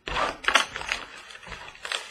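Crackling and tearing of trading-card packaging as a 2017 Donruss Optic Baseball box is opened, in a quick run of sharp crinkles.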